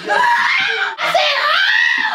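A young woman's high-pitched shrieking vocals: two long, wavering squeals, each arching up and then down in pitch, with a brief break between them about a second in.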